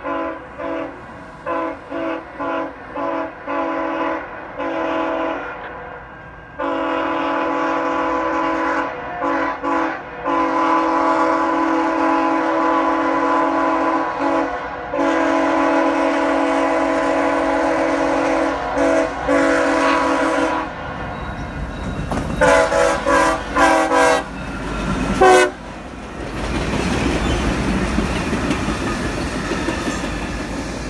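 A locomotive air horn on the lead unit of a CSX track-geometry train: a quick string of short blasts, then long held blasts with brief breaks. About two-thirds of the way through the horn stops and the train rolls past with a rumble and wheels clicking over the rail joints.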